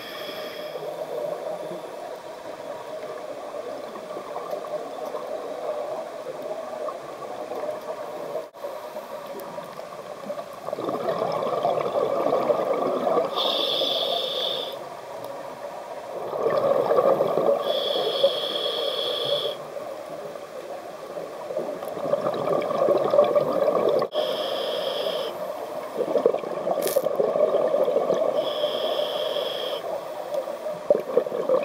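Scuba diver breathing through a regulator underwater: a steady watery background at first, then about a third of the way in, bubbly breath bouts every five seconds or so, each ending in a brief higher-pitched hiss.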